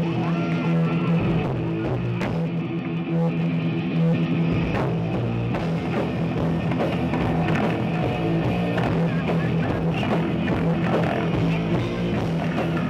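Live thrash metal band playing: distorted electric guitars riffing over a bass guitar and a pounding drum kit, loud and without a break.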